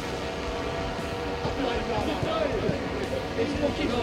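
Outdoor voices of footballers calling and laughing during a passing drill, with no clear words, over a steady mechanical hum and a low rumble of wind on the microphone.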